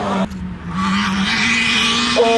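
Rally car engine running at high revs, cut off suddenly about a quarter second in; after a brief dip, another rally car's engine comes in and builds louder as the car approaches.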